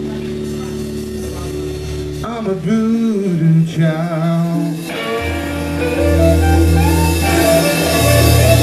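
Live blues-rock band on electric guitars and drums. Held guitar chords give way about two seconds in to wavering, bending notes, and a heavy low bass note comes in about five seconds in.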